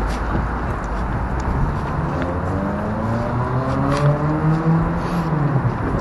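Street traffic: a motor vehicle's engine rises steadily in pitch for about three seconds as it accelerates, then falls away near the end, over a steady low traffic rumble.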